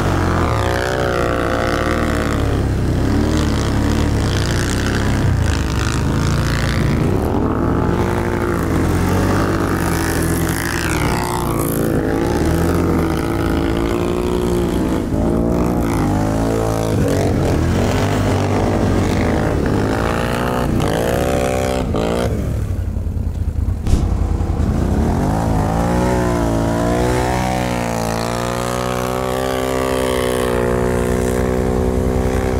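ATV engine revving up and down as the quad is ridden through snow, its pitch rising and falling every few seconds. The revs drop briefly about three-quarters of the way through, then climb steadily near the end.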